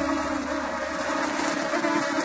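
A swarm of mosquitoes buzzing, a steady, dense drone, as a cartoon sound effect.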